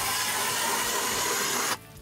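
Battery-powered 40-volt lithium electric ice auger running and cutting into lake ice, a steady grinding hiss that stops abruptly near the end.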